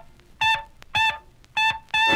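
Early Chicago-style jazz band recording from an LP: in a stop-time break, a single wind instrument plays three short notes on the same high pitch, about half a second apart, with the band silent between them. The full band comes back in at the end.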